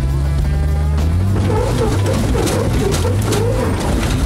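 Off-road buggy's engine running under load as it climbs a ramp, its note rising about a second in, with music playing over it.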